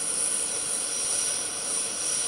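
Steady jet aircraft engine noise with a thin high whine over it, as heard across an airport apron.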